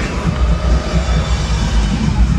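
Monster truck engines running loud in an indoor arena, a dense low rumble in a phone recording, with crowd noise mixed in.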